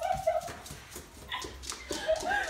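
A dog whining briefly in the first half second, followed by soft scuffs and footsteps.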